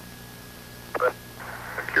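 Steady hiss and low electrical hum of an old recording's audio feed, then a man's voice on the commentary channel briefly about a second in and again near the end.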